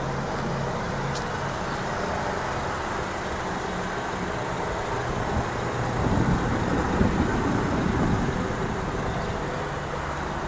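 Steady motor-vehicle noise with a low engine hum. It swells louder for a few seconds from about six seconds in, then settles back.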